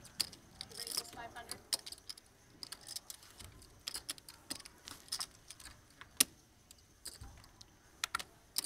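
Poker chips clicking against each other as players handle and stack them, a run of irregular quick clicks with one sharper click about six seconds in.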